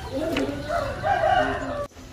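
A rooster crowing once, one long call of about a second and a half that cuts off suddenly near the end.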